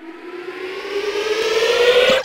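Synthesized tone with several overtones, gliding slowly upward in pitch while growing steadily louder, peaking near the end.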